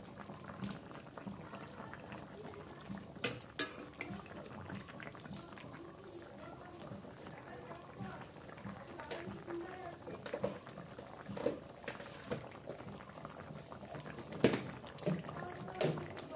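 Fish curry bubbling at a boil in a steel kadai, a steady simmer with small pops of bursting bubbles and a few sharper clicks.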